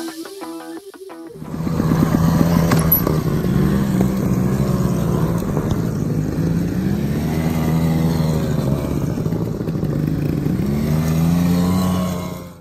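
Trials motorcycle engines revving up and down with the throttle as the bikes climb a steep dirt slope. They take over from background music a little over a second in.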